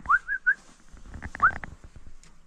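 A person whistling at a caged dog to get its attention: a quick run of three short rising whistles near the start, then one more rising whistle about a second and a half in.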